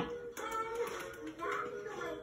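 A baby making short, soft babbling vocal sounds, twice, during play.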